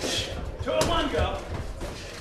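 Two sharp impacts about a second apart, Muay Thai strikes landing on gloves or body, with voices shouting around them.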